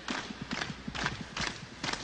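Live Latin-rock percussion groove with no other instruments: a bright struck hit repeating a little over twice a second, with lower hand-drum strokes between them.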